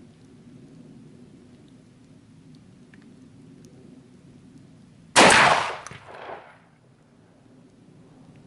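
A single shot from an MR-156 inertia-operated 12-gauge semi-automatic shotgun with a 625 mm barrel, firing a Gualandi slug, about five seconds in. The report rings out and dies away over about a second and a half.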